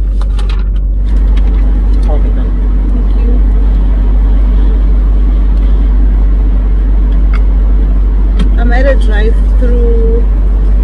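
Steady low rumble of a car idling, heard from inside the cabin, with a few light clicks in the first second.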